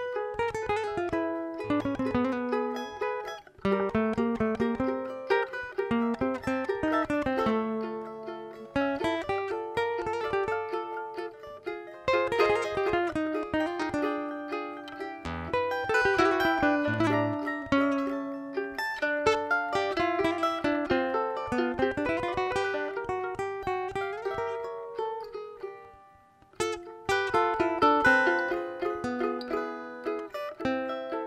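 A cavaquinho and a nylon-string classical guitar playing a live instrumental duet, the cavaquinho picking a quick melody over the guitar's bass and chords. The music breaks off briefly near the end, then starts again.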